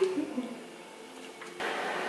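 A woman's voice trailing off, then quiet room tone. About one and a half seconds in, it cuts abruptly to a slightly louder, different room hiss.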